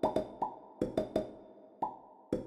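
A quick run of pitched cartoon plops in two notes, about seven in two seconds, each a short upward glide that rings briefly: the sound effects of the hanging cartoon chicks knocking together like a Newton's cradle.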